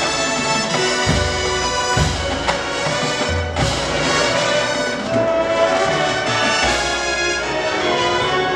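Marching band brass section playing loud sustained chords, backed by the percussion section, with low drum hits every second or so underneath.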